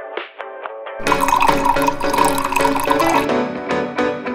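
Background music: a few soft, separate plucked-sounding notes, then a fuller, denser arrangement comes in about a second in.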